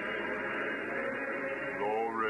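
Faint congregational hymn singing on an old, narrow-band recording, with notes held steadily; a voice rises in pitch near the end.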